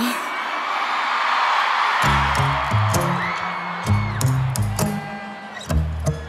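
Stadium crowd cheering, then a live band starts a pop song's intro about two seconds in: a run of low bass notes with guitar and sustained higher tones over it, and sharp drum hits near the end.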